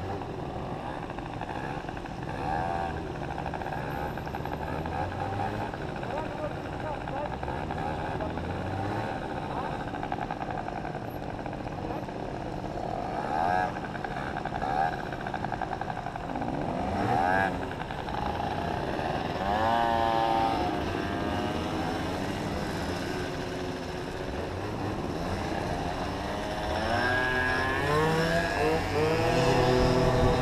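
Small motorcycle and scooter engines running at idle, with the nearest engine revving up in rising sweeps about twenty seconds in and again near the end as the bikes pull away.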